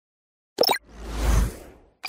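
Logo-animation sound effects: a short pop about half a second in, then a whoosh with a low rumble that swells and fades out within about a second.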